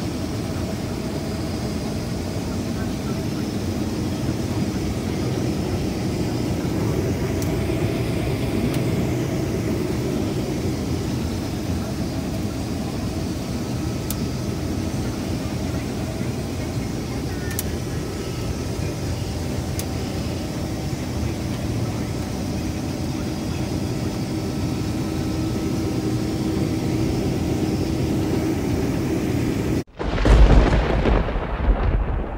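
Combine harvester running while cutting soybeans, heard from inside the cab: a steady engine and machinery drone with a few faint, sharp clicks.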